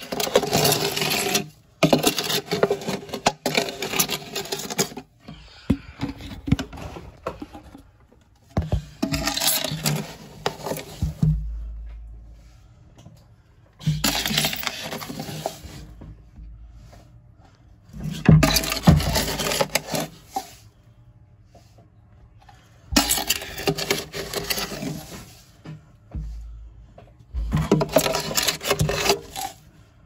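Substrate being scooped and scraped out of a glass tank, in bursts of scraping a second or two long a few seconds apart, with low handling bumps between them.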